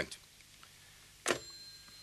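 Telephone receiver put down on its cradle with one sharp click just over a second in, a faint high tone lingering after it: the call has been ended.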